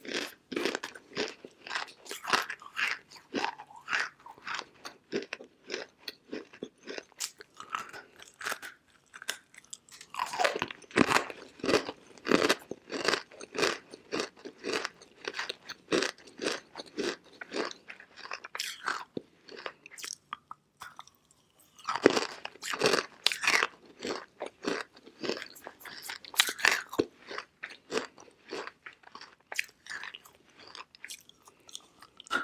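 Dry edible clay chunks being bitten and chewed: a rapid run of crisp crunches. Heavier bursts of fresh bites come about a third of the way in and again about two-thirds through, with a brief lull just before the second.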